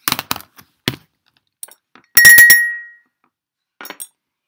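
Several sharp clicks and knocks, then about two seconds in a louder bright clink of three or four quick strikes that rings out and fades within a second.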